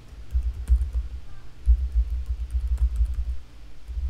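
Typing on a computer keyboard: a quick, irregular run of key clicks with dull low thumps under them.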